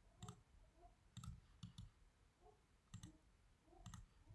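Faint clicks of a computer pointing device's button, about six, unevenly spaced, as objects are picked one after another.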